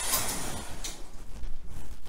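Shower curtain rustling as it is grabbed and pulled aside. The rustle is strongest at the start, comes again briefly just under a second in, then fades.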